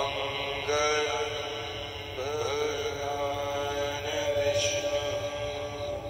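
A wordless, chant-like vocal toning: voice tones that slide in pitch, with a fresh entry at the start and again about two seconds in, then settle into a long held note over a steady drone.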